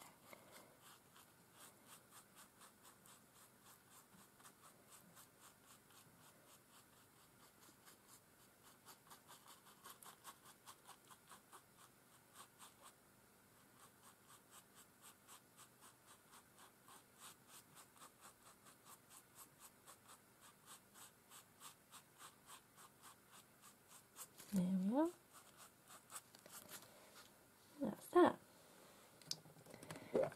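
A paintbrush stroking matte medium over a paper cutout on a journal page: soft, rhythmic brushing at about three strokes a second. Near the end, two short vocal sounds rising in pitch stand out above it.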